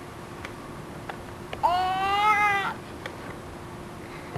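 A baby gives one high-pitched squeal, about a second long, starting a little over a second and a half in.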